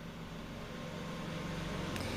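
Steady low hiss and hum with the soft scraping of a steel spatula stirring a dry filling in a black kadai over a medium gas flame, slowly growing a little louder.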